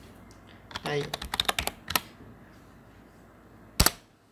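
Computer keyboard typing: a quick run of about half a dozen keystrokes as a password is typed, then one louder key press near the end that submits it.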